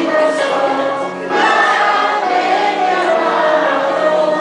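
Children's choir singing a Christmas song together in held, sustained notes, with a brief break for breath a little over a second in.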